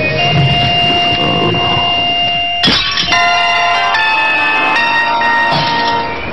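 Music with held steady tones, then a sudden hit about two and a half seconds in, followed by a peal of bell tones that change about once a second, like church bells ringing for a wedding.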